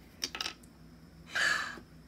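A quick cluster of small plastic clicks as the cap of a hand cream tube is worked open, followed about a second later by a short, louder hissing rush of sound.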